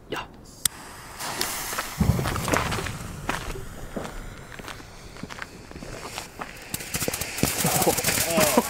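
Lesli Red Blink firework fountain: its lit fuse sputters with scattered crackles and ticks, then the fountain catches and starts spraying with a growing hiss near the end.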